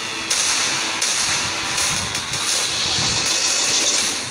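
Cinematic trailer sound design: a sustained hissing whoosh with a low rumble that swells twice, about two and three seconds in.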